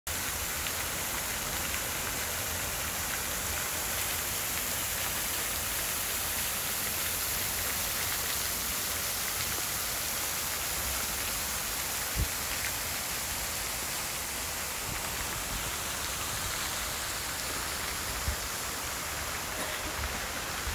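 Water from a tiered stone fountain splashing steadily into its basin, a continuous hiss, with two brief low thumps past the middle and near the end.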